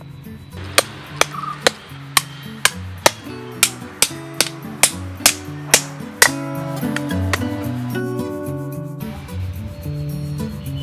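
Kitchen knife chopping raw green mango on a wooden block: about a dozen sharp knocks, roughly two a second, that stop about six seconds in. Background music plays throughout.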